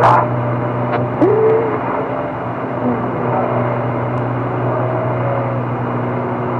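Steady low hum and hiss from an old radio transcription recording, with a few faint wavering tones drifting through.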